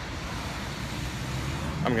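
Steady roadside traffic noise with a low engine rumble underneath, heard outdoors on a phone; a voice starts right at the end.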